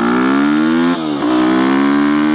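Yamaha WR250X's single-cylinder four-stroke engine through a full FMF exhaust, loud under hard acceleration: the revs climb, dip briefly about a second in, then climb again.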